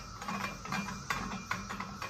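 Coilover shock body being spun by hand on its threaded lower mount, giving a run of small irregular metallic clicks and rattles. The body is turning out of the mount to lengthen the assembly for lift.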